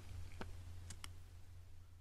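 Quiet room tone with a steady low hum and three faint, brief clicks, one about half a second in and two close together about a second in.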